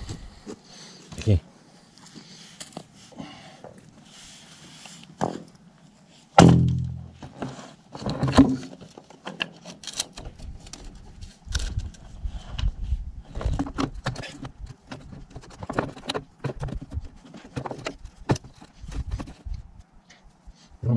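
Hand work on a white plastic water pipe in a dirt trench: scattered knocks and clicks of the pipe and tool being handled, densest in the second half. A short, loud, low voice sound comes about six seconds in.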